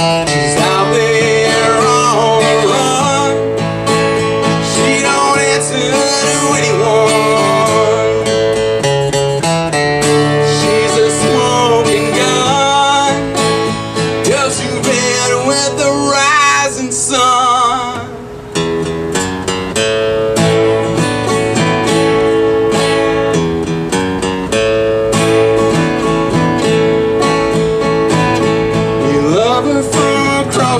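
Acoustic guitar strummed steadily, with a man's voice singing over it at times. The playing dips briefly about eighteen seconds in.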